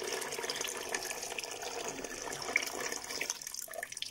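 Water pouring in a steady stream into a large metal pot of broken carob pods, splashing onto the pods, about a liter and a half in all. The stream thins out near the end into a few drips.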